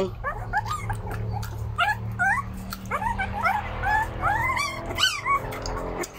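Very young puppies whimpering and squealing for food: many short, high cries that slide up and down in pitch, a few a second, over a steady low hum.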